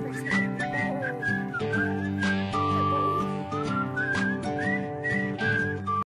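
Background music: a whistled melody sliding between notes over held instrumental chords, cut off abruptly at the end.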